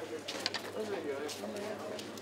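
Busy street ambience: indistinct voices of passers-by talking, with short sharp clicks and taps from footsteps and handling.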